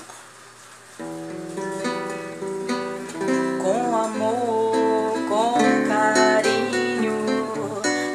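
Instrumental opening of a song: guitar chords starting about a second in, with a low bass note joining and a gliding melody line playing over them.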